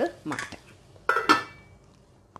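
Stainless steel lid set down on a cooking pot: two quick metal clanks about a second in, followed by a brief metallic ring.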